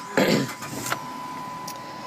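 2005 Dodge Magnum being started with the key: a short burst of starter cranking as the engine catches, then the engine idling steadily, with a thin steady whine from about a second in.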